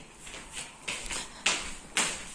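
Shuffling footsteps on a wooden floor, a few soft steps about half a second apart starting about a second in.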